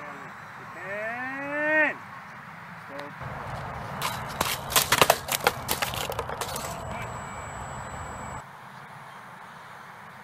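A man's drawn-out exclamation that rises and then falls in pitch, about a second in. A few seconds later comes a burst of sharp cracks and clatters lasting about three seconds.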